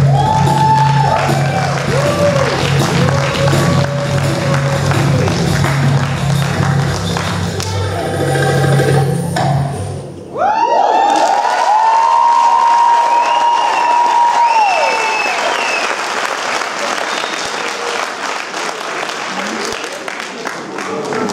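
Recorded Egyptian baladi music with accordion and drum comes to its end about halfway through. An audience then applauds with long cheering calls, and the applause slowly thins out.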